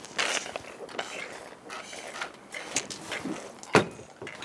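A group chugging bottled beer together, with irregular gulping and bottle noises and a sharp knock near the end.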